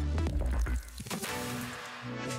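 Background electronic music with a heavy bass line and a beat.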